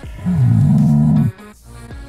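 Background music, with a loud drawn-out pitched cry lasting about a second that starts shortly in and cuts off abruptly.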